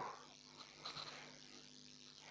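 Near silence: faint room tone with a low steady hum and a faint brief sound about a second in.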